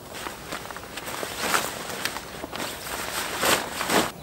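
Footsteps on the forest floor and the rustle of a poncho being pulled out and shaken open over a rope ridgeline, an irregular scuffing and crumpling that grows louder near the end.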